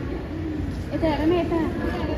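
Indistinct voices of people talking in the background, over steady room noise.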